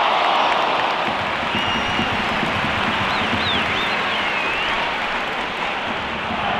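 Large stadium crowd cheering and applauding a goal, a loud continuous roar that eases slightly, with a few shrill whistles about halfway through.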